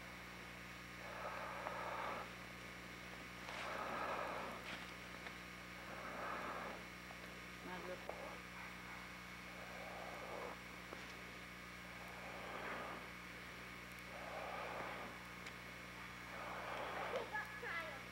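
Heavy breathing close to the microphone, one breath about every two seconds, over a steady low hum.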